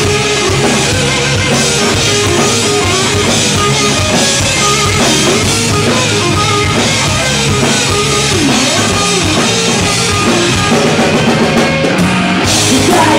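Live rock band playing an instrumental passage: drum kit and electric guitars, loud and steady, with no vocals.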